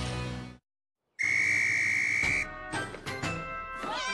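A stretch of jingle music cuts off into a moment of silence, then one long, steady whistle blast lasting about a second, followed by light cartoon music and sound effects.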